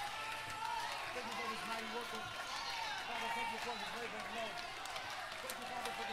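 Many overlapping voices of a church congregation praising and praying aloud, with no instruments playing.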